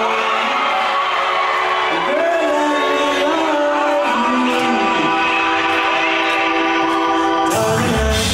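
Live reggae band playing on an outdoor stage, with a singer over long held notes and no bass or drums. Just before the end the bass and drums come in with the full band.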